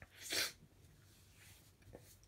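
A man's single short, sharp breath, a noisy huff lasting about a third of a second shortly after the start, with his hand over his mouth.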